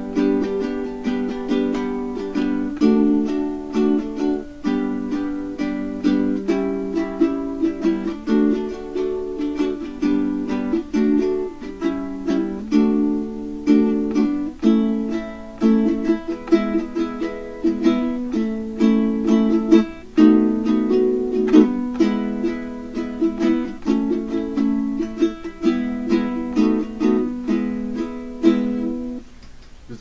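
Tenor ukulele with Worth Brown strings, tuned D-G-B-E like a baritone, strummed continuously in a run of chords. The playing stops shortly before the end.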